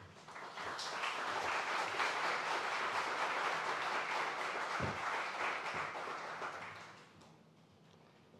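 Audience applauding: it builds quickly, holds steady for several seconds and dies away about seven seconds in.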